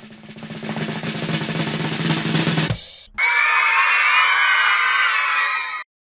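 Snare drum roll building up in loudness for about three seconds, then a brief break and a bright sustained sound effect with wavering high tones that lasts about two and a half seconds: a suspense-and-reveal cue.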